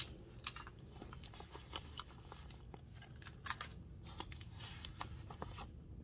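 Faint rustling and small clicks of hands handling a leather handbag and lifting small items out of it, with one sharper click about three and a half seconds in.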